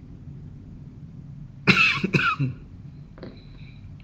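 A person coughing twice through an open webinar microphone, a little before halfway, over a steady low hum.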